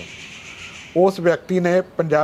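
A soft hiss for about the first second, then a man's voice in two short bursts.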